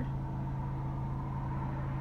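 Steady low hum with a faint higher tone above it, a constant background drone with no other distinct sound.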